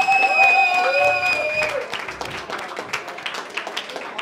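Audience clapping and cheering at the end of a song in a club. A long, high steady tone and some shouting voices stop a little under two seconds in, and the clapping carries on, thinning out.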